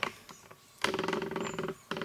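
Tripod pan head creaking for about a second as the camera is swung round, its pan lock just loosened.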